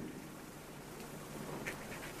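Quiet room tone: a faint steady hiss during a pause in the dialogue, with one soft faint tick a little before the end.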